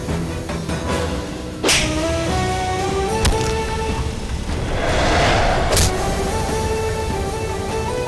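Dramatic film score playing a stepping melody under a fight scene. Three sharp punch-like hit effects land about a second and a half apart, and a swelling whoosh leads into the last one.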